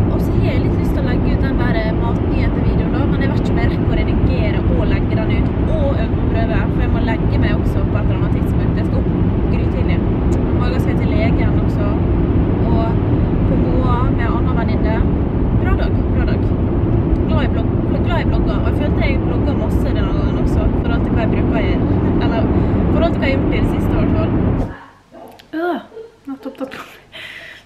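Steady engine and road rumble inside a car's cabin, with a woman talking over it. The rumble cuts off suddenly near the end, leaving a quiet room.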